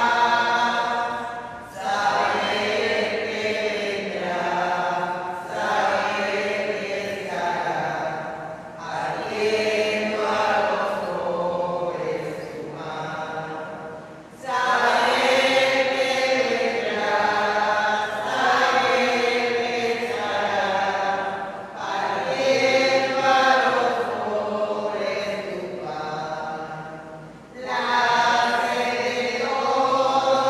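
A slow hymn sung in long melodic phrases with brief breaths between them: the offertory hymn sung while the gifts are prepared at the altar.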